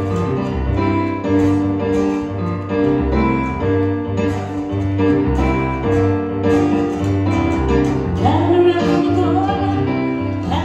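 Live band playing a song's intro: a Roland Juno-DS keyboard in a piano voice plays chords over a steady bass pulse, with acoustic guitar. Singing comes in about eight seconds in.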